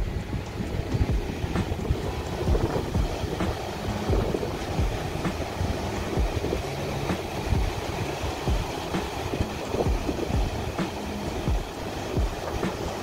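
Ocean surf breaking on the beach, a continuous low rush, mixed with wind rumbling and gusting on the phone's microphone.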